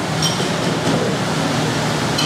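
Steady rumble of street traffic, with a low hum underneath.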